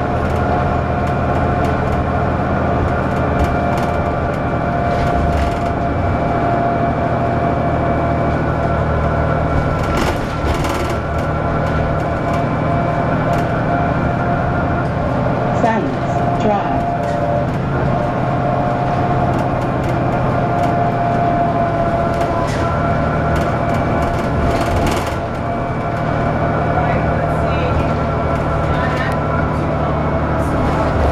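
Interior ride noise of a 2002 Neoplan AN440LF transit bus under way, its Cummins ISL diesel and Allison B400R automatic transmission giving a steady low drone with a high whine held throughout. Short rattles from the cabin fittings come a few times, loudest about ten and fifteen seconds in.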